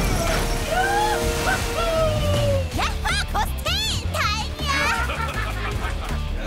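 Cartoon battle soundtrack: action music with a steady low beat under sliding whoosh-like effects. About three seconds in come several rising-and-falling shouted cries, with water splashing as the chained mecha creature hits the sea.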